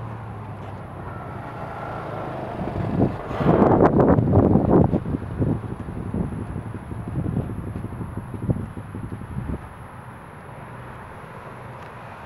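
The V-twin engine of a 2013 Arctic Cat Wildcat 1000 idling with a steady low hum, heard close at its ceramic-coated exhaust and growing fainter toward the end. A louder rush of noise, most of all about three to five seconds in, sits over it.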